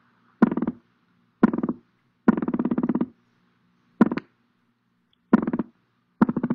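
Recording of Atlantic croaker drumming, played back through a computer: short trains of rapid knocking pulses, five in all, each under a second long, with gaps of about half a second to a second between them. The fish make this sound with muscles that vibrate the swim bladder.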